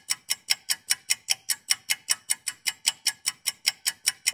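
A quiz countdown-timer sound effect: rapid, even clock ticks, about five a second, marking the time given to answer a question.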